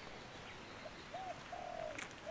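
A bird calling faintly in the trees: a couple of short, low, arched calls, then one longer held note near the end, over a steady background hiss.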